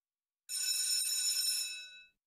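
A bell rings steadily for about a second and a half, starting about half a second in and fading out near the end.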